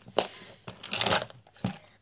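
A hard plastic pencil box being handled on a table: a sharp click, about a second of rustling and scraping, then another knock.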